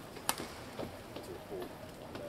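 A badminton racket strikes the shuttlecock once, sharply, about a third of a second in: a serve from the far end. Short squeaks from the players' shoes on the court mat follow.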